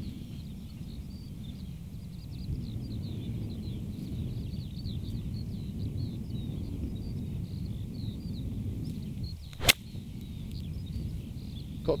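Steady wind rumble on the microphone, then about three-quarters of the way through a single sharp crack of a golf club striking the ball out of the rough.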